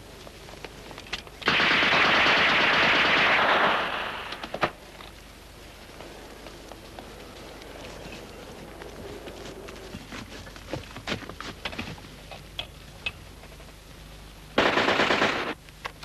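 Film battle-scene machine-gun fire: a burst of about two seconds, then scattered single gunshots, then a second, shorter burst of about a second near the end.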